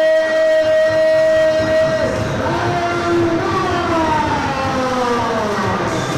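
Ring announcer's voice over the hall's PA, drawing out a long call: a high note held for about two seconds, then a second drawn-out note that slides slowly down toward the end.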